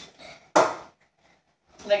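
A few short, sharp knocks, the loudest about half a second in.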